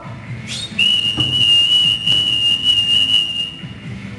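A whistle blown in one long, steady blast of about three seconds, sliding up in pitch as it starts.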